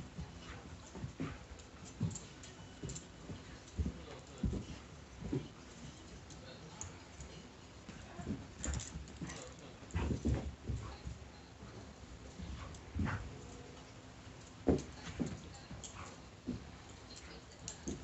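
A dog playing with a plush toy on carpet: irregular thumps and scuffles of paws and toy, strongest about ten seconds in and again just before fifteen seconds.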